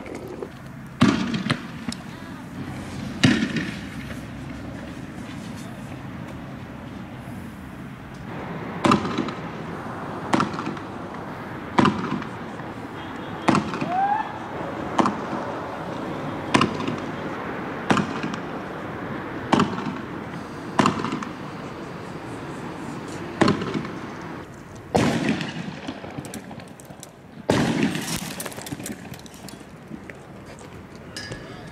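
Fireworks going off: about a dozen sharp bangs at uneven intervals, a second or two apart, over a steady background din.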